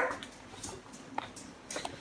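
A few faint, short clicks and knocks of kitchen things being handled, as a knife is taken up.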